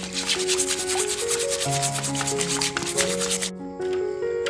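A mud crab's shell being scrubbed hard in a basin of water, in rapid rubbing strokes that stop briefly about three and a half seconds in. Background music plays underneath.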